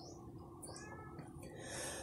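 Faint room tone with a low steady hum, and a faint, brief animal call with a bending pitch a little under a second in.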